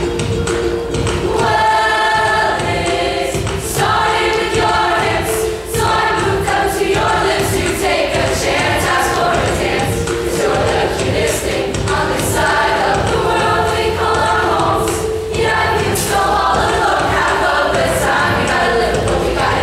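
A mixed-voice middle school show choir singing an up-tempo number in harmony over instrumental accompaniment with a steady beat.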